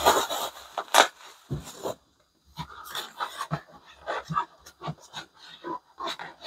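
Handling noise from a hollow plastic cloud lamp shell being turned over in the hands: irregular rubs and soft knocks, with two louder scrapes near the start and about a second in.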